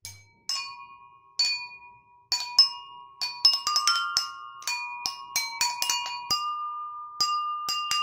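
Jal tarang being played: a row of water-filled ceramic bowls struck with a thin stick, each stroke a bright ringing note, the pitch of each bowl set by how much water it holds. Two single strokes in the first second and a half, then a quicker run of melody notes.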